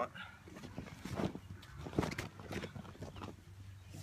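A sandbag being grabbed and hoisted overhead: rustling and shifting of the bag and its sand filling, with a few sharp handling noises about one and two seconds in.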